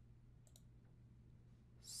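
Near silence with a low steady hum, broken by a single faint computer mouse click about half a second in, selecting a toolbar tool.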